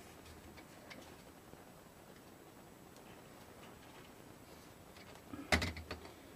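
Faint snips and light clicks of a small cutting tool trimming molded-pulp egg carton into petals. Near the end comes one loud, short clatter as the tool is put down on the cutting mat.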